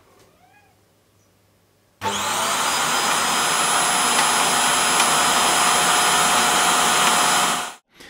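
ECOVACS DEEBOT N8+ auto-empty station emptying the docked robot vacuum's dustbin: its suction motor starts suddenly about two seconds in with a whine that rises as it spins up, then runs as a loud, steady rush of air with a high whine and cuts off abruptly near the end. The emptying is quite loud.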